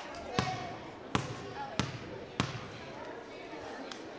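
Basketball bounced on a gym floor four times, about two-thirds of a second apart, as a player dribbles at the free-throw line before shooting. Crowd chatter runs underneath.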